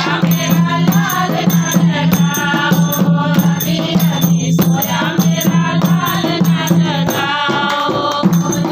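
A group of women singing a folk song in chorus, accompanied by a dholak hand drum and hand clapping keeping a steady beat.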